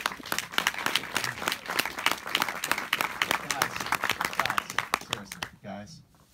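Audience applauding: a dense run of many hands clapping that fades out about five and a half seconds in.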